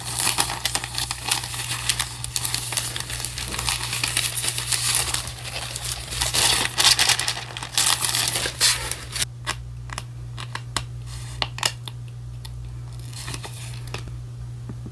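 Paper crinkling and rustling as it is handled, dense for about the first nine seconds, then giving way to scattered light taps and clicks. A low steady hum runs underneath.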